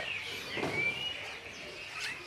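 Caged songbirds calling: a couple of short, high whistled chirps about half a second in, over faint background bird sounds.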